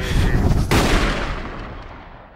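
Intro-logo sound effect of a gun blast: a loud deep boom at the start and a sharp crack about two-thirds of a second in, then a long echoing tail that fades away.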